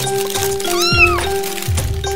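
A single cat meow near the middle, rising and then falling in pitch, about half a second long, over background music with a steady beat and held tones.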